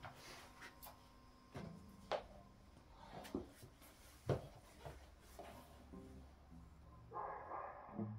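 Faint handling noise from a plugged-in electric guitar being picked up and its leather strap put on: scattered clicks and knocks, a rustle near the end, over a low steady hum from the tube amp.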